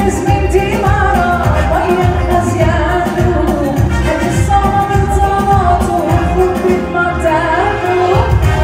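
Live Assyrian sheikhani dance music: a woman singing into a microphone over a keyboard and a steady beat, played loud through the hall's PA speakers.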